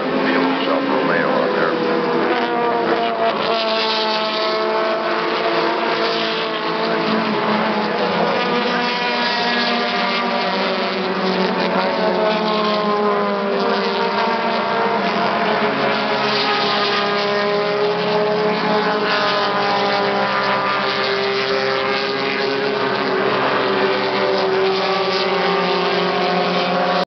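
Several race car engines running hard as cars pass one after another, their pitch climbing and dropping again and again as the cars accelerate and shift gears.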